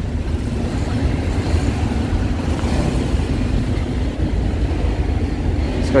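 Steady street traffic: a low rumble of the engines of passing cars, motorbikes and tuk-tuks.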